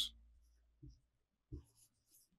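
Faint felt-tip marker strokes on a whiteboard, a soft scratching, with two brief low soft sounds in between.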